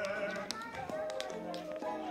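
A song with backing music and a voice holding long, wavering sung notes, with scattered light taps that fit dancers' shoes on a wooden floor.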